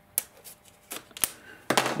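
Hands handling and turning over a cardboard product box: a few sharp taps and light scrapes of fingers and card against card, spread across two seconds, with a louder rustle near the end.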